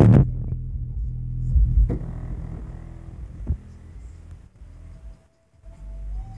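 Car stereo playing bass-heavy music, loud at first, then muffled so that mostly the deep bass notes come through, with a couple of light knocks. The sound drops out briefly a little after five seconds before the bass comes back.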